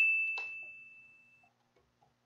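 A single bright bell-like ding, struck just before and ringing out on one clear tone, fading away over about a second and a half. It is likely an edited-in chime that goes with the on-screen caption. Faint keyboard clicks follow near the end.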